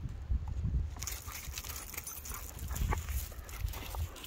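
Two dogs playing rough with each other, giving play growls.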